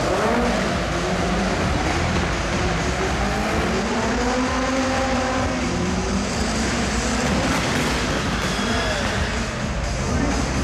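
2000cc-class racing car engine revving up and down repeatedly as the car slides around the track, its pitch rising and falling over a constant noisy din, echoing in a large hall.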